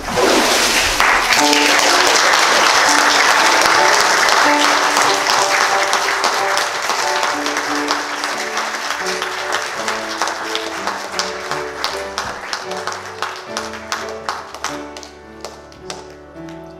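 A congregation bursts into loud applause, dense for the first several seconds and then thinning to scattered claps, while a melody plays on an instrument underneath.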